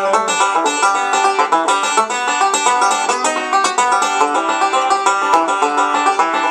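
Resonator banjo fingerpicked in a fast bluegrass roll, a rapid, unbroken stream of picked notes with no singing.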